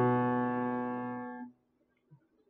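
Upright piano chord, struck just before and held, fading steadily, then cut off abruptly about one and a half seconds in as the keys are released.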